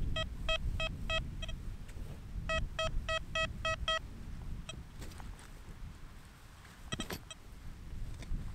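XP Deus 2 metal detector giving a run of short, clear target beeps, about three a second, then a second run after a short pause, with single beeps later. The tones signal a metal object buried under the coil as it sweeps back and forth. Wind rumbles on the microphone throughout.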